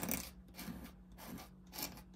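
Steel dip-pen nib scratching across paper in a series of quick, short strokes, the first the loudest and the rest fainter.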